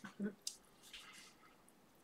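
Faint wet mouth clicks and smacks from someone eating a cream pastry (bakelse), a few in the first second.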